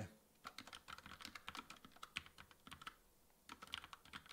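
Faint typing on a computer keyboard: a quick run of key clicks, a short pause near the end, then more keystrokes.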